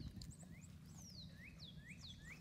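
Faint bird song: a string of clear whistled notes, some sliding down in pitch and some sliding up, repeated every half second or so over a low outdoor rumble.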